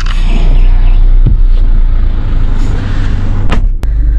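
Diesel engine of a BAIC BJ40 idling, a steady low rumble heard from inside the cabin. Two sharp clicks come near the end.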